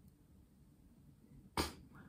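Near silence, then about one and a half seconds in a single short, sharp breath noise from a man.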